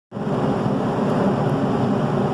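Paint spray booth's ventilation fan running: a steady rush of moving air with a low hum beneath it.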